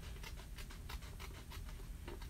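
Scissors cutting through patterned cardstock paper: a faint, rapid run of small crisp snips.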